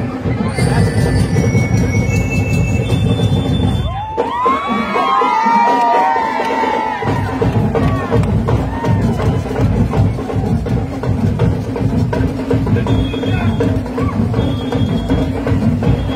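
A marching band's drum section playing a steady, driving beat, with short high notes over it in the first few seconds. About four seconds in, the drums drop out for roughly three seconds while crowd cheering and shouts rise, then the beat comes back.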